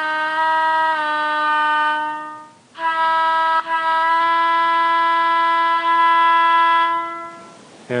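Paragon2 sound decoder in an N scale Alco PA diesel locomotive sounding its horn while it is quilled from the throttle: a first blast steps down in pitch about a second in and fades out, then a second long, steady blast follows and fades near the end.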